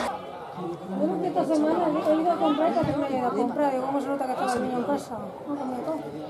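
Indistinct chatter of several spectators talking at once.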